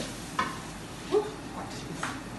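Food frying in a wok on a gas stove, stirred with a utensil that scrapes the pan, with two short sharp knocks of the utensil against the wok, the louder one about a second in.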